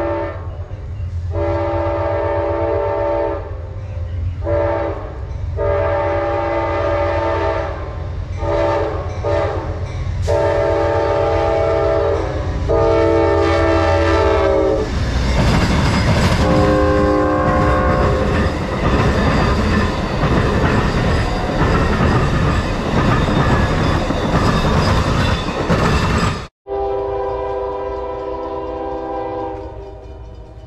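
Amtrak passenger train sounding its air horn, a chord of several notes, in about ten blasts of varying length as it approaches. From about halfway it passes close by with a loud rumble of wheels on rail, the horn still sounding. After a sudden cut near the end, another train horn sounds, quieter.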